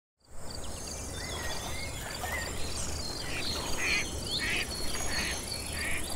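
Outdoor nature ambience of insects chirring steadily, with a short high note repeating about three times a second, and bird-like chirps over it. It fades in just after the start.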